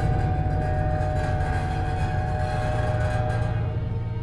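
Contemporary chamber ensemble playing a dark, sustained texture: a dense low rumble with a few held higher tones above it, easing off slightly near the end.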